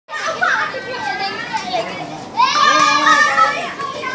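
Boys' voices calling out and shouting while they play, with one long, high-pitched yell from about halfway through lasting over a second.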